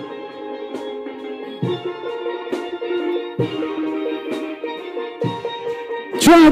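Steel pan band playing a soca tune, with ringing pan chords over a steady drum beat that hits a little more than once a second.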